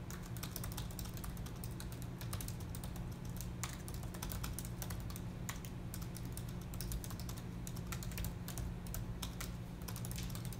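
Typing on an Apple MacBook's laptop keyboard: quick, irregular keystroke clicks, over a steady low hum.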